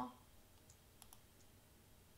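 Near silence with a few faint computer mouse clicks, most of them about a second in.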